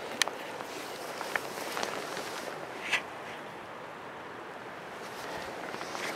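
Steady breezy outdoor ambience with a few soft clicks and rustles, the most distinct about three seconds in.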